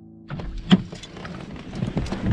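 Someone moving inside a parked car, reaching for the inside door handle: a sharp click a little under a second in, then clothes rustling and small knocks against the car's interior trim.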